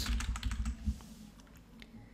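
Typing on a computer keyboard: a quick run of keystrokes over the first second, then a couple of single clicks.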